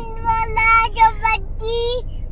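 A small child's voice singing in a sing-song, three held notes on nearly the same pitch with short breaks between them.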